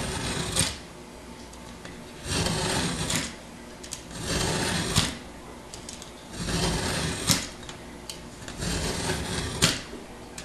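Utility knife drawn along a metal straightedge, cutting into the paper face and gypsum of a sheetrock piece: five scraping strokes about two seconds apart, each about a second long and ending in a sharp click.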